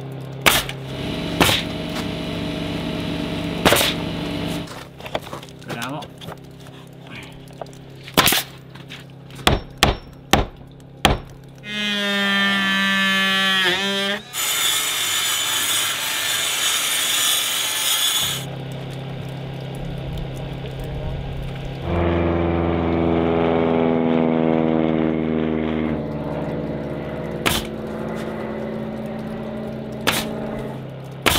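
A pneumatic nail gun firing into engineered-wood lap siding, a sharp shot every second or two through the first ten seconds or so, then a circular saw spinning up and cutting through a siding board for about four seconds. Background music runs underneath, and a separate pitched hum comes in about three quarters of the way through.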